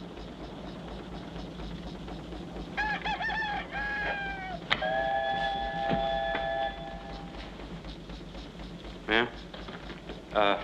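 Bird-like animal calls: a wavering run of pitched notes about three seconds in, a sharp click, then a long call held on two steady pitches that stops a little past seven seconds.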